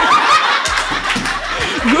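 A group of girls laughing together: one laughs close to the microphone over a roomful of classmates laughing.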